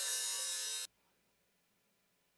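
An open hi-hat drum sample playing back from a software drum sampler for just under a second: bright and hissy with no bass, starting abruptly and cut off suddenly.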